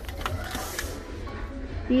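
A coated-canvas pouch being handled and turned over on a shelf, with a brief rustle about half a second in.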